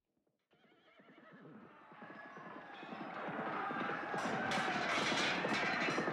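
Horses galloping and neighing, fading in from silence about half a second in and growing steadily louder.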